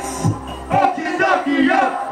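Live hip-hop stage performance heard from a TV: rappers shouting the hook with a crowd shouting along. The beat's bass drops out a little under a second in, leaving mostly the shouted voices.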